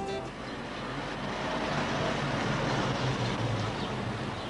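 Street traffic noise with a motor vehicle passing, growing louder towards the middle and easing off near the end. It follows the last moment of the programme's music, which cuts off right at the start.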